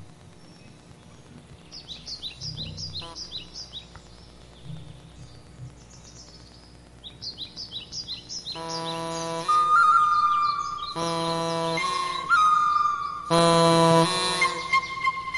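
Bird-like chirping in short runs of quick falling chirps. A little past halfway, a small handmade wind instrument comes in loud with long held notes full of overtones, over a higher whistling line that slides down at the start of each phrase.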